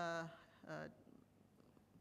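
Speech only: a speaker's held, level "uh" hesitation, then a second short "uh", followed by quiet room tone.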